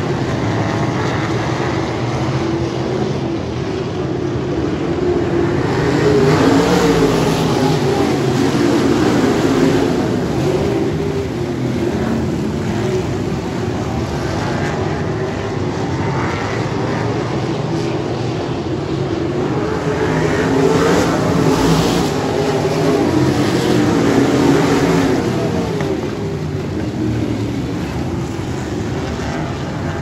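Engines of a field of wingless open-wheel dirt-track race cars running as the pack circles the oval. The sound swells louder as the cars pass about six seconds in and again around twenty seconds in.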